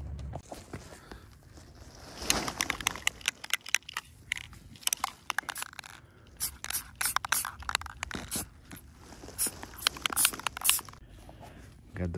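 Aerosol spray-paint can spraying a steel sway bar in many short, irregular bursts, mixed with sharp scrapes and clicks of handling.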